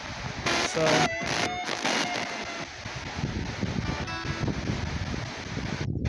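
S-Box ghost scanner (spirit box) sweeping through radio stations: a steady hiss of static broken by brief chopped snippets of voices and music, with a few sudden cut-outs to silence.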